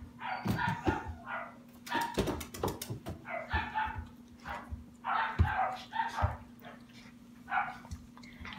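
A young puppy giving short yips and whines in repeated bursts, mixed with sharp taps and clicks.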